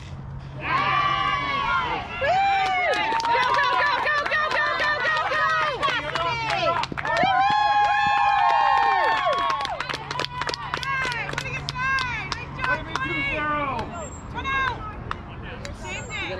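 A softball bat cracks on the ball right at the start. Then many high-pitched young voices scream and cheer together as the play runs, dying down near the end.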